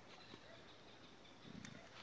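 Near silence between bursts of speech, with a faint low sound about one and a half seconds in.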